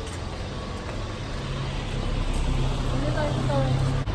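Street traffic: a vehicle's engine hum that grows louder over the last couple of seconds as it approaches, over a steady background of road noise.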